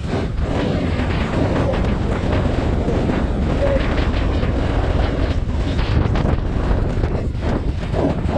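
Loud, steady wind buffeting on the microphone over the rush of a small Ferrari-styled powerboat running fast across the sea.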